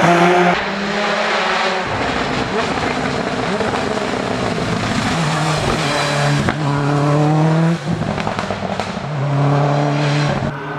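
Hill-climb race car, a Subaru Impreza-bodied special, taking a hairpin under power. Its engine revs rise and drop again with several gear changes. The middle stretch is rough and noisy, and the revs are cut suddenly near the end before climbing again.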